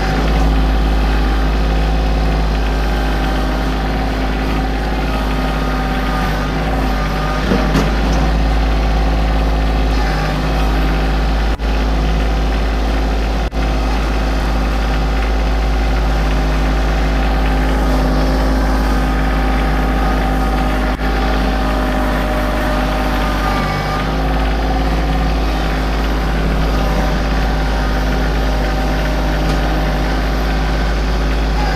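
Kioti CK2610 compact tractor's three-cylinder diesel engine running steadily as the tractor drives and manoeuvres with its box blade.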